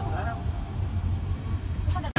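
Steady low road and engine rumble heard inside a moving car, with a faint voice briefly at the start.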